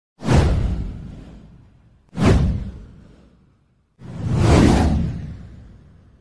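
Three whoosh sound effects from an intro title animation, about two seconds apart. Each swells up quickly and fades away over a second or two; the third rises more slowly.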